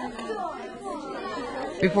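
Many children's voices chattering at once in a large room, a murmur of overlapping talk. Near the end a single clear voice comes in over it.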